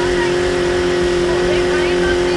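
Boat's outboard motor running at a steady speed, a constant even hum, with wind rumbling on the microphone.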